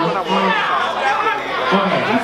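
A man's voice over a microphone calling out in long, drawn-out held tones, with crowd chatter underneath.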